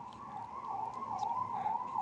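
A faint, high whistling tone in the background. It holds steady and then wavers up and down in pitch.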